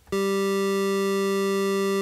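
Studiologic Sledge synthesizer playing its basic Init patch: a single steady held note from pulse waveforms on its oscillators, a plain buzzy tone with many even overtones and no modulation. It starts just after the beginning and holds at one level.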